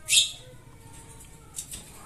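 A brief sharp noise just after the start, then birds calling faintly in the background.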